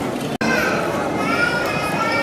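Murmur of many people chatting at once in a large hall, with children's higher voices standing out. The sound drops out for an instant less than half a second in, at a cut in the recording.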